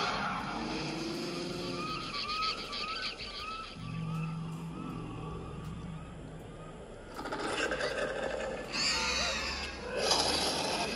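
An animated film's soundtrack, music and sound effects, playing from a Samsung Galaxy S23 Ultra's speakers. It grows louder and busier over the last few seconds.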